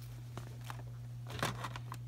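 A few short, light crinkles and clicks of handled plastic, loudest about a second and a half in, over a steady low hum.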